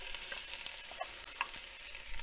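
Chopped onions and red bell pepper sizzling in hot olive oil in a cast-iron Dutch oven: a steady hiss with a few small pops.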